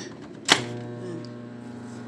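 A sharp click about half a second in, as the plug goes into a crowded power strip. A small dial microwave oven then starts running with a steady electrical hum.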